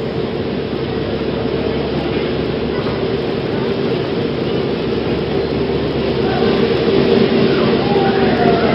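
Soundtrack of an old high-diving film played over the room's speakers: a steady rushing noise with a steady hum, getting a little louder, and faint voices or music coming in near the end.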